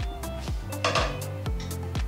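Background music with a steady beat, about two drum strokes a second, with a brief noisy clatter about a second in.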